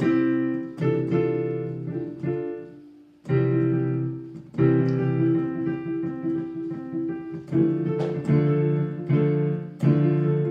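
Digital piano played as a string of notes in arpeggio exercises, each note struck and left to ring. The playing breaks off briefly about three seconds in, then carries on.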